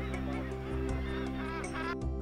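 Northern gannet colony calling, several short harsh calls that come thickest in the second half, over background music with steady sustained tones.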